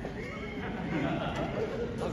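Indistinct voices in a large hall, overlapping speech with a high, gliding voice among them.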